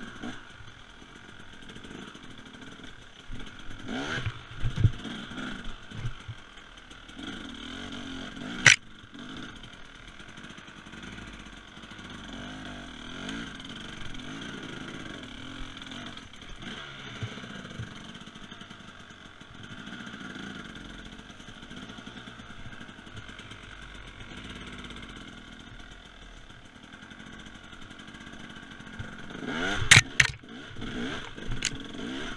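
Husaberg TE300 two-stroke enduro engine running at low speed, its note rising and falling with the throttle, with knocks and clatter from the bike over rough ground. There is a loud sharp knock about nine seconds in and more knocks near the end.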